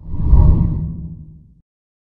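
Low whoosh sound effect for a TV channel's logo animation. It swells quickly, peaks about half a second in and fades out over the next second.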